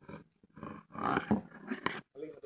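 A man's voice, low and indistinct, with a sharp click near the end.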